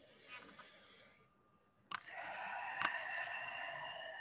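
A woman breathing in time with a rotating stretch. A soft inhale comes in the first second. After a click about two seconds in, a longer, louder open-mouth exhale follows as she leans forward.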